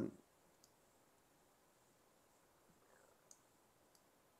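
Near silence with three faint, sharp computer mouse clicks: one about half a second in, two close together near the end.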